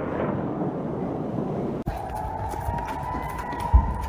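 A rocket launch's rushing noise for a little under two seconds. It cuts abruptly to a rocket-alert siren's steady wail that rises slightly in pitch, with a brief low thump near the end.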